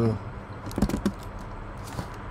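A few keystrokes on a computer keyboard: short clicks typing a terminal command, mostly about a second in.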